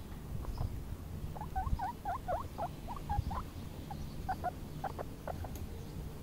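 Four-week-old baby guinea pig squeaking loudly: a quick string of short, high squeaks from about a second and a half in, then a few more in the second half.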